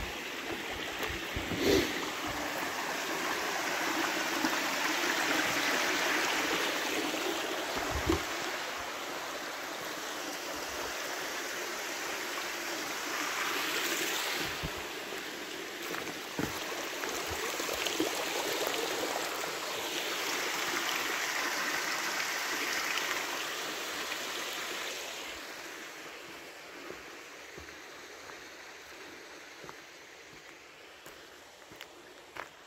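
Water running in a small mountain stream, a steady rush that swells and ebbs and fades over the last few seconds, with a few scattered knocks.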